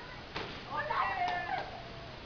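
A single sharp knock, then a high-pitched wavering cry lasting about a second.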